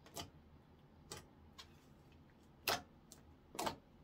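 Orange slime being folded and pressed by hand, giving sharp clicking pops of trapped air, about five in four seconds, the loudest two in the second half.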